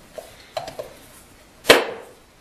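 Metal housing halves of an exhaust-brake vacuum pump being pressed together by hand during reassembly: a few light clicks, then one sharp knock near the end.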